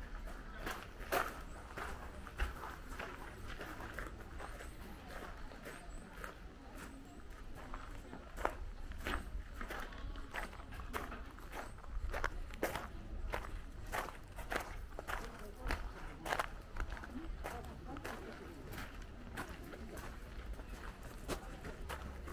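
Footsteps of a person walking, first on wooden veranda boards and then along an outdoor path. The steps fall about two a second over a steady low rumble.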